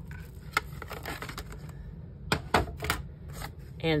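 Clear acrylic cutting plates and a plastic embossing folder being handled and pulled apart: a few light clicks, then a quick cluster of sharp plastic clacks a little past halfway.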